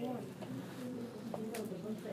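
Indistinct low voice murmuring, too unclear to make out words, with a couple of small clicks.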